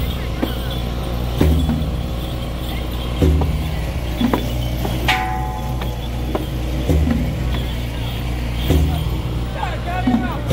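A large temple drum struck in slow single beats, about one every two seconds with a longer pause midway, over crowd noise and scattered small clicks. A brief horn-like tone sounds about five seconds in.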